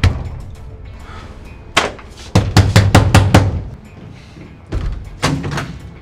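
Fist pounding on a wooden door in bursts: one bang near two seconds in, a quick run of about seven in the middle, then a few more near the end, over background music.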